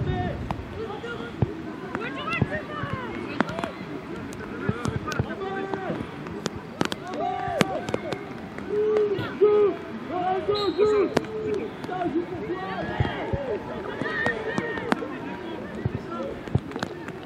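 Voices shouting and calling across a youth rugby pitch during play, short calls overlapping one after another, with scattered sharp knocks among them.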